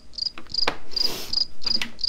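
Desktop calculator keys being pressed in quick succession, each press giving a short high beep, about three a second, along with light plastic key clicks. A brief rustle comes about a second in.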